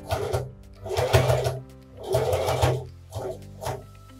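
Domestic Singer sewing machine stitching in short bursts: three runs of about half a second each, then two brief ones near the end. It is sewing a few locking stitches through a rib knit neckband and a T-shirt neckline.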